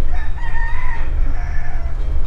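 A rooster crowing once: a long held note that drops lower toward the end, over a steady low rumble.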